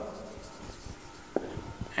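Marker writing on a whiteboard: a faint scratching of the tip across the board, with a sharp tap a little past halfway.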